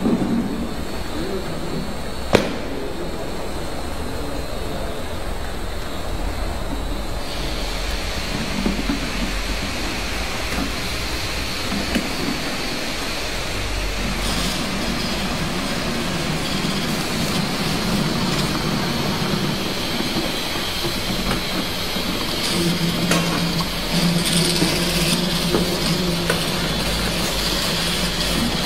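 Automatic double-side adhesive labeling machine running: steady mechanical noise of the conveyor and label applicators, with a sharp click about two seconds in and a high thin whine joining about seven seconds in.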